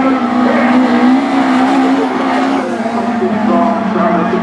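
Engines of several autograss race cars running hard at high revs on a dirt track. The steady engine note drops slightly in pitch about halfway through.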